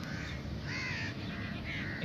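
Birds calling: about four short calls, each rising and falling in pitch.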